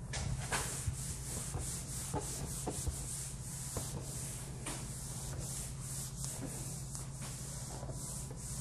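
Whiteboard eraser wiping a dry-erase board, a steady run of quick repeated scrubbing strokes.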